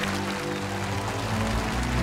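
Background music with sustained low chords, under light audience applause.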